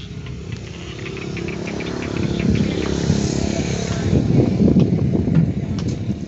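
A small engine running, growing steadily louder over several seconds, loudest in the second half, then easing off slightly near the end, like a vehicle approaching and passing.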